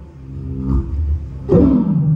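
Live amplified banjo music with a low, growling, roar-like vocal at the microphone over a low drone; about a second and a half in a loud note slides down in pitch.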